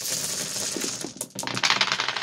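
Dice rolling: a rapid clatter of small hard clicks, a few separate knocks in the middle, then another burst of clattering as they settle.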